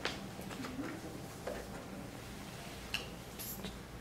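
Quiet room with a few faint, short clicks.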